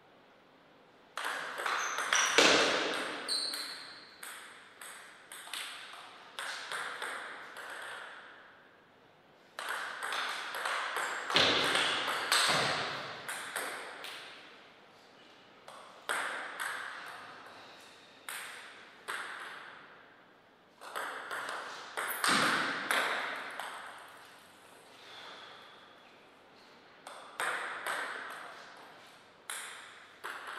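Table tennis ball clicking rapidly off rackets and table in several rallies, each a quick run of hits separated by pauses of a few seconds, the hits echoing briefly in a hall. A few louder thuds stand out among the hits.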